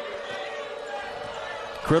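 Basketball arena ambience: a steady crowd murmur with a faint hum, under a ball being dribbled up the court. A commentator's voice comes in at the very end.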